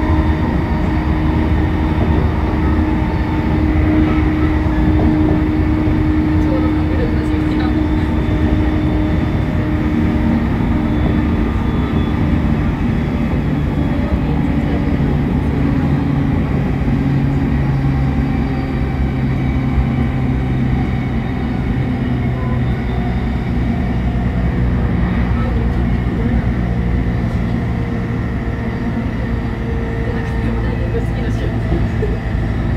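Running noise inside the motor car of a JR E531 series electric train slowing from about 120 to 90 km/h: steady wheel-on-rail rumble with motor and gear tones that fall in pitch as the train slows.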